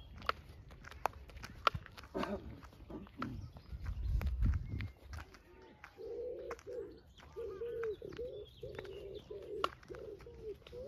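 A pigeon cooing over and over from about six seconds in, a string of low coos. Before that, scattered sharp ticks and a low rumble about four seconds in.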